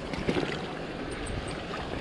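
Shallow stream water sloshing and splashing as a long-handled dip net is pushed through bank vegetation and drawn up, with low rumble underneath.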